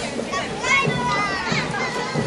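Many children's high voices talking and calling out at once, overlapping throughout.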